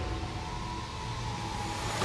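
Film soundtrack: a steady low rumble of rushing underwater water, with a few high notes held over it.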